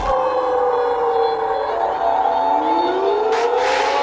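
Breakdown in an oldschool hardcore techno track: the kick drum drops out at the start, leaving held synth chords and a siren-like tone that slowly falls in pitch, joined by another tone rising over the last couple of seconds.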